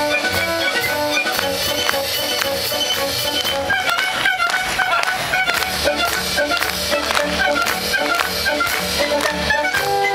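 Live performance by a small orchestra: a solo violin over string accompaniment and a steady pulsing bass line, with quick short high notes from about four seconds in.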